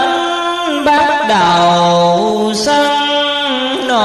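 A voice chanting a Hoa Hao Buddhist doctrinal verse in drawn-out Vietnamese recitation style, holding long notes and sliding from one pitch to the next without clear words.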